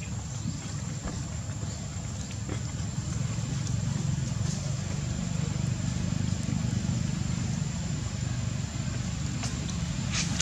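Steady outdoor background noise: a low rumble that grows louder about three seconds in, under a thin, high, steady tone and a few faint ticks.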